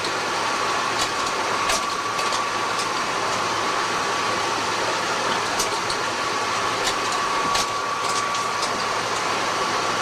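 Desktop photocopier running a copy job: a steady mechanical whir with a thin, steady high whine and scattered light clicks as sheets feed through.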